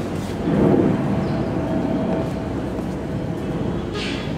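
An airplane passing overhead: a steady low rumble with a faint hum, a little louder about half a second in.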